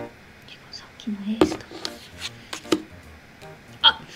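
Light taps and clicks of paper playing cards on a wooden table as they are handled and turned over in a memory card game, about five in all, with a brief low hum of a voice a little after one second.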